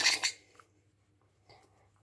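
Aerosol shaving foam can spraying, a sputtering hiss that stops about half a second in. The can has not been shaken, so it spits liquid instead of foam.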